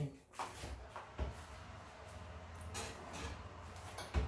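Metal bundt cake pan being put into an oven: faint handling knocks, with a low knock about a second in and a brief scrape near three seconds.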